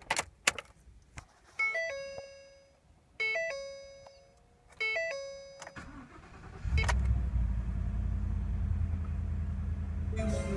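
Ignition key clicking in the lock of a 2015 Ford F-150 pickup, then three dashboard warning chimes about a second and a half apart. A little before seven seconds in, the engine cranks and catches, then idles steadily.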